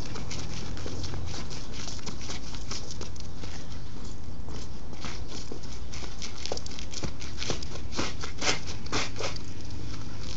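Sneakers tapping and scuffing on concrete in quick, irregular dance steps, the taps coming thicker in the second half, over a steady background rumble.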